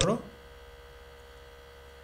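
A steady low electrical mains hum with a faint steady tone above it, heard under the recording once a spoken word ends in the first moment.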